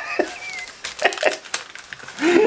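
A man laughing quietly: a faint high note early on, then a few short, breathy bursts of laughter.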